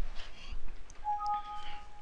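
Windows system alert chime, two clear tones sounding together for about a second, as a warning dialog box opens.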